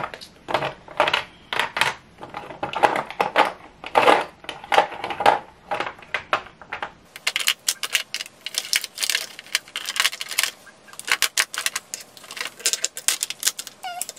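Plastic lip gloss tubes and lipsticks clicking and clattering against each other and against a clear acrylic organizer as they are picked out and moved around, a rapid, irregular run of small knocks.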